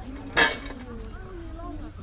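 A single sharp clink or knock about half a second in, loud and brief with a short ring, over faint voices and a low steady rumble.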